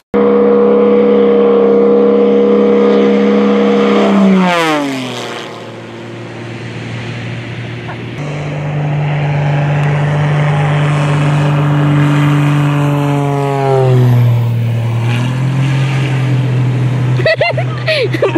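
A propeller airplane's engine making low, fast passes. Each pass is a steady drone that drops sharply in pitch as the plane goes by: the first about four seconds in, the second about ten seconds later.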